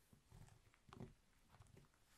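Fingers rolling and pressing a honeycomb wax sheet into a candle: faint soft rubbing with a few light sticky clicks, about one every half second.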